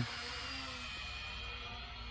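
Small toy quadcopter hovering, its propellers giving a faint, steady whine of several held tones, over low wind rumble on the microphone.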